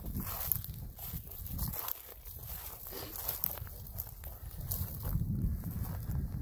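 Footsteps on dry wheat stubble, with wind buffeting the microphone as an uneven low rumble.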